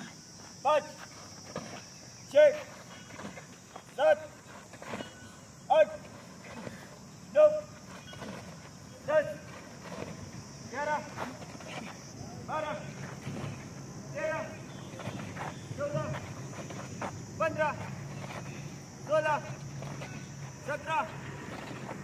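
A man's voice shouting short drill counts for a physical-training exercise, one call about every second and a half and fading somewhat after the first half.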